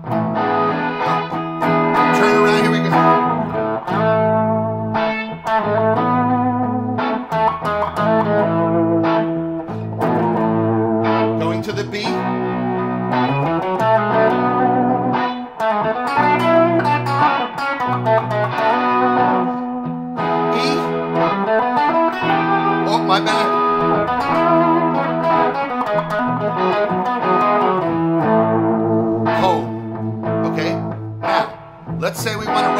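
Semi-hollow electric guitar through an amplifier, picking single-note melody lines over a looped backing of chords. The loop cycles A major, B minor and E7 in a slow 6/4 waltz feel, and the sustained chords change every couple of seconds.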